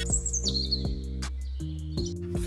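Intro music with bass, chords and a regular beat. Over it, a high chirping sound steps down in pitch in the first half second, then lingers faintly.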